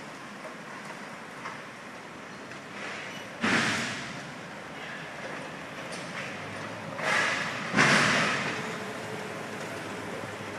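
Golf cart driving along with a steady running noise, broken by three loud, sudden surges of noise that each fade within about half a second: one about a third of the way in and two close together a little past two-thirds through.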